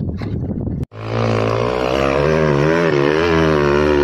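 About a second of rough, wind-like noise, then after a sudden cut a motorcycle engine running hard under load as it climbs a steep dirt slope, its pitch wavering up and down.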